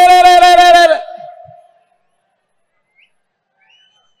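End of a man's amplified speech: one long drawn-out vowel held at a steady pitch for about a second, then fading out, followed by near silence.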